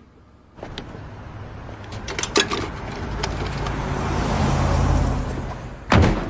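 A road vehicle driving past, its engine and tyre noise growing steadily louder over several seconds with a few sharp clicks along the way. It is cut off suddenly by a short, loud hit near the end.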